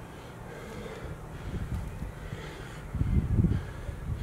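Heavy, forceful breathing from a man working through squat reps with a sand-filled bucket, a puff of breath with each rep. The loudest puff comes about three seconds in.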